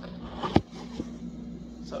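Handling knocks of a phone being repositioned by hand: one sharp knock about halfway in and a lighter tap a moment later, over a steady low hum.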